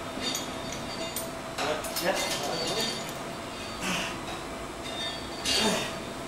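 A few separate metal clinks and knocks from gym equipment, the plates and cables of weight-stack machines, with indistinct voices in the background.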